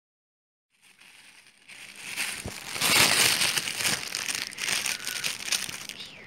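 Thin plastic takeaway bags being handled and pulled open, crinkling and rustling, starting about a second in and loudest around the middle.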